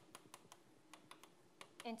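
Chalk ticking against a blackboard as words are written: a faint, irregular run of short, sharp ticks, several a second.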